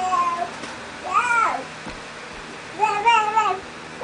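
A baby making high, drawn-out cooing sounds: three separate calls, the middle one rising and then falling in pitch.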